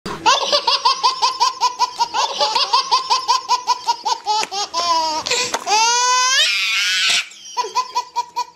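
High-pitched, cartoon-like laughter sound effect: a fast, even run of 'ha-ha' pulses, about five a second. Around the middle it gives way to a rising squeal and a brief rush of noise, and the laughing picks up again near the end.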